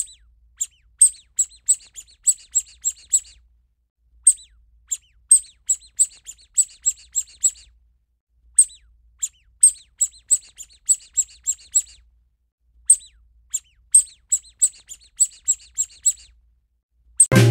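Ducklings peeping: high, short cheeps that slide downward, about three a second, in four bouts of roughly three seconds with a short pause between each. The bouts are all alike, a looped sound effect.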